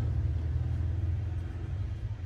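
Car engine idling: a steady low hum, heard from inside the cabin.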